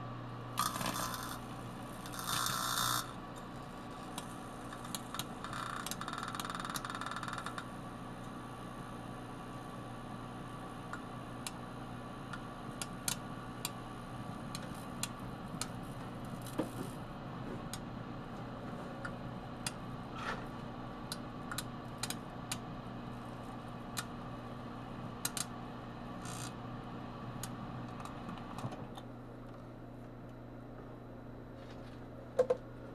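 Microwave oven running with a steady hum while the electron gun from a CRT arcs inside it: sharp snapping clicks scattered throughout, with a few short bursts of hissing in the first several seconds.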